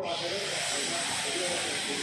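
Welding torch's shielding gas hissing steadily as the torch is held to the pipe seam before the arc is struck; the hiss starts suddenly.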